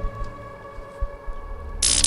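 Soft background music with long held tones over a low hum. Near the end, a sudden bright, high sound effect cuts in, at the moment a magic glow is edited in.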